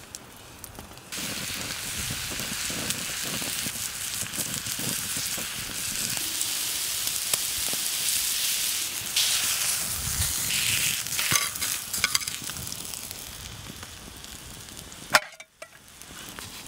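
Steak sizzling on a flat rock heated by a campfire: a steady hiss of searing meat with a few small pops. A single sharp click comes near the end.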